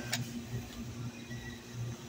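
Soda fountain nozzle pouring a short shot of cherry vanilla Coke into a plastic cup, with a click just after the start, over a steady low hum.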